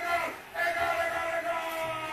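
A voice holding a long, steady sung note with a short break about half a second in: a playful chant rather than speech.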